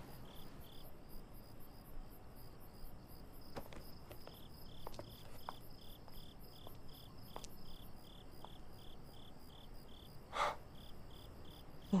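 Crickets chirping faintly and steadily, about three chirps a second, as night-time background; a brief soft burst of noise about ten seconds in.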